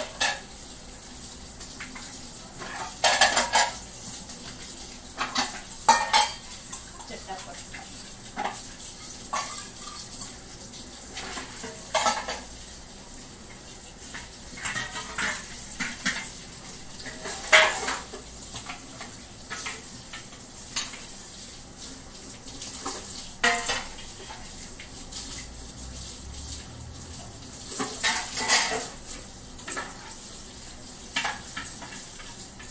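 Metal dishes and utensils being handled at a kitchen sink, clinking and clattering against each other in irregular knocks every second or two, with a few louder clatters.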